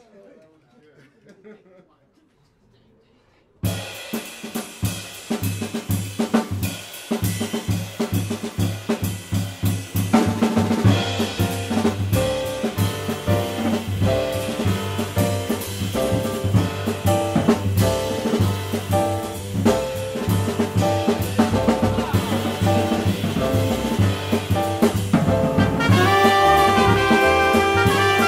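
A jazz rhythm section starts up abruptly about three and a half seconds in: a drum kit with sharp snare and rim hits over a steady upright bass line, and a Yamaha grand piano comping. From about ten seconds on the piano fills in more fully and the music grows louder.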